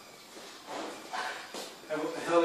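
Brief, soft voice sounds, quiet and indistinct, in a large room.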